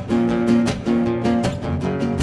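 Acoustic guitars strumming chords in a steady rhythm, about four strokes a second, in an instrumental passage of a French chanson.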